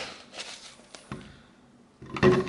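A few soft clicks and knocks of a metal spoon against a bowl and blender cup as mango chunks are scooped in, the sharpest at the very start, fading to near quiet by the end.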